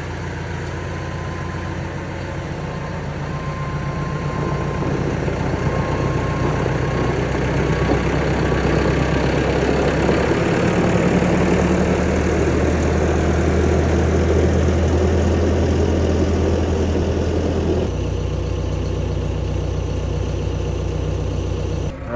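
Farm tractor's diesel engine running. The engine speeds up about ten seconds in and drops back to a lower, steady speed near the end.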